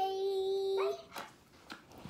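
A young girl's voice holding one long, high sung note, probably a drawn-out goodbye, that ends with a short upward slide about a second in. Faint taps and rustling follow.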